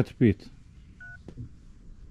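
Smartphone keypad giving one short touch-tone (DTMF) dial beep about a second in, as a digit of a phone number is keyed in.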